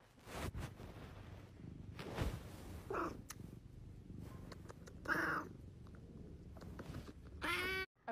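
An orange tabby cat meowing a few times: short calls about three and five seconds in, and a longer one near the end.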